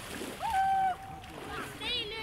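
A young person's high, held call lasting about half a second, then a short rising call near the end, with water splashing around people wading in a river.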